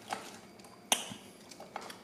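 Eating sounds as fries are picked from the bowl and chewed: soft small noises, with one sharp click about a second in.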